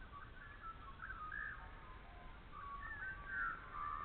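A bird singing in two bouts of short warbled phrases, the second, near the end, the loudest.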